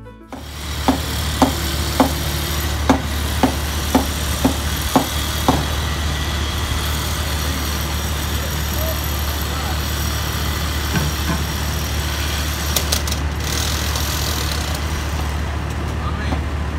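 Construction-site ambience: a steady low machine hum under a wide noise. Sharp knocks come about twice a second for the first few seconds, and a few clicks come near the end.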